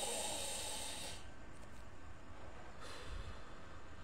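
A man breathes in deeply through his nose over a cup of hot ginseng tea, drawing in its steam: one long, breathy intake that fades out about a second in. A fainter breath follows about three seconds in.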